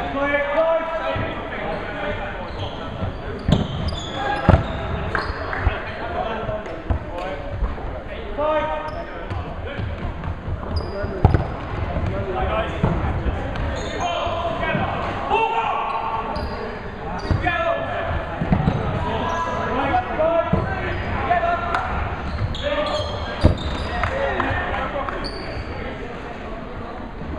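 Dodgeballs thudding on a wooden sports-hall floor, a few sharp hits standing out, among many players shouting and chattering in a large echoing hall.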